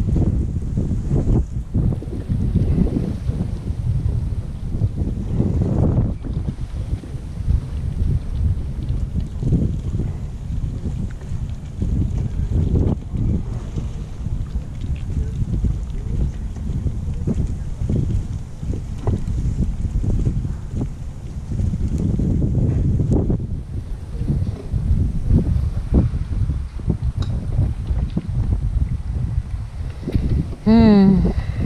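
Wind buffeting the microphone in uneven gusts, a fairly loud low rumble with no clear tone.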